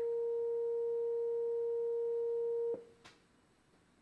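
A steady sine-wave test tone of about 460 Hz played through a speaker driving a Rubens' tube, cut off suddenly about two and three-quarter seconds in. The tone is what sets up the standing wave in the tube's flames.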